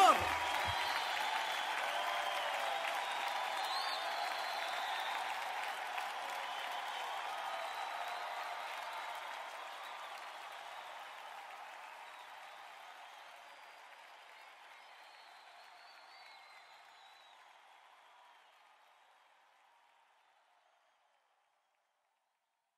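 Live concert audience applauding, with a few voices calling out over the clapping, slowly fading out until it is gone near the end.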